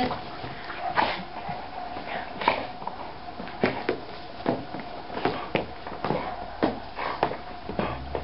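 A small dog making short, irregular sounds, roughly two a second.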